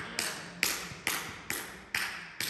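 Sharp, evenly spaced percussive taps, about two a second, each with a sudden start and a short echoing decay, fading slightly toward the end.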